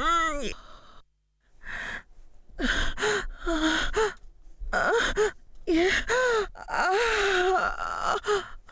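A woman moaning, gasping and sighing in a sexual way: a string of breathy calls that glide up and down in pitch, with a short break about a second in.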